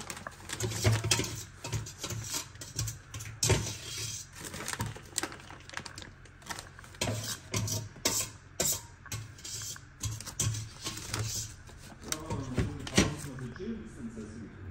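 Plastic bag of grated cheese crinkling in irregular bursts as the cheese is sprinkled by hand onto a lasagne, over background music with a low, even beat.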